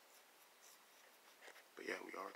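Near silence: faint room tone with a little soft scratchy rustling. A man's voice starts up near the end.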